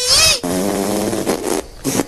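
A person's voice making a non-word vocal sound: a short high cry that rises and falls, then a long drawn-out note held at one pitch for about a second.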